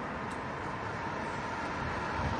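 Steady street background noise, a low even rumble of road traffic that grows slightly louder near the end.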